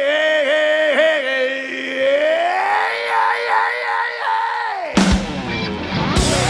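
A male rock singer holds one long note with a wavering vibrato, sliding higher about two seconds in and dropping away just before the band crashes back in about five seconds in.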